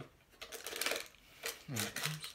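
A quick run of light clicks and clatters, about a second long, from a plastic M&M's candy dispenser being handled.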